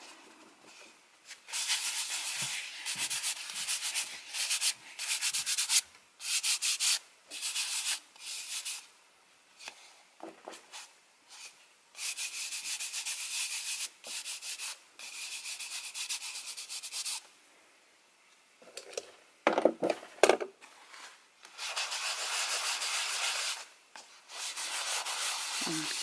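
Charcoal scrubbed and scribbled across rough handmade paper in runs of quick back-and-forth strokes with short pauses between them. There is a brief knock about three-quarters of the way through.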